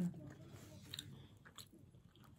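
Faint chewing of a mouthful of soft cake, with a few small, soft clicks of mouth or spoon.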